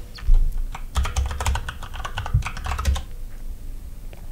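Typing on a computer keyboard: a thump just after the start, then a quick run of keystrokes from about a second in until about three seconds in.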